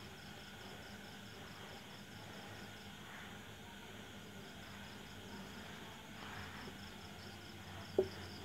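Faint background insect chirping, a steady train of high-pitched pulses a few times a second, over a low steady hum. A soft marker stroke or two on the whiteboard, about three seconds in and again near six seconds.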